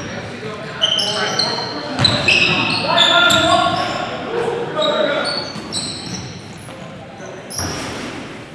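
Basketball bouncing on a hardwood gym floor as sneakers squeak in many short, high-pitched chirps, all echoing in a large gym.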